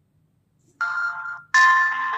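Fire-Boltt Ninja Talk smartwatch's speaker ringing its find-device alert: a short single tone just under a second in, then a chiming ringtone melody of changing notes starting about a second and a half in.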